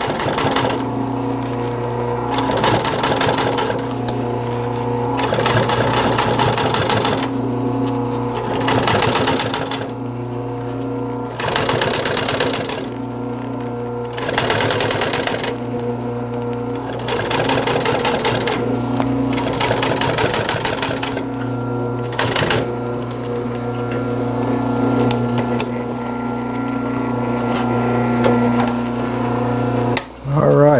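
Industrial sewing machine top-stitching a seam in black vinyl. Its motor hums steadily throughout, while the needle runs in spurts of a second or two, stopping and starting again many times as the material is guided.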